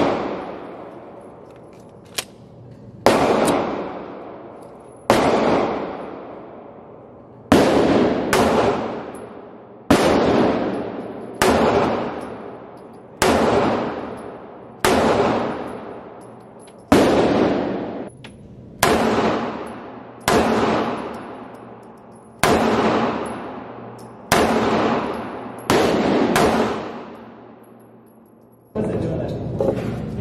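Beretta 9000S 9mm pistol fired in slow, deliberate single shots, about sixteen of them, roughly one every one and a half to two seconds. Each sharp report is followed by a long echoing decay from the enclosed indoor range.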